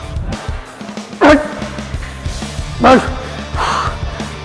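Two loud strained shouts of effort from a lifter pushing heavy reps on a hack squat machine, each falling in pitch, about a second in and again near three seconds. Background music with a steady beat plays underneath.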